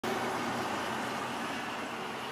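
Steady rushing background noise with no distinct events, easing very slightly over the two seconds.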